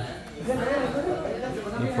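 Background chatter of several people talking at once, softer than close speech.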